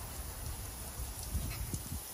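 Aerosol brake cleaner spraying in a steady hiss onto the metal parts inside a truck door, over a low rumble.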